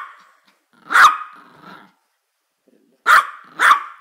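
Yorkshire Terrier yapping: a sharp yap about a second in, then a pause, then two quick yaps near the end.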